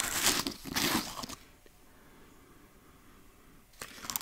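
Rustling handling noise from cosmetic products being handled close to the microphone for about a second and a half. A quiet stretch of about two seconds follows, and the handling noise starts again near the end.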